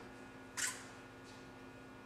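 Faint steady electrical hum of room tone, with a short hiss about half a second in.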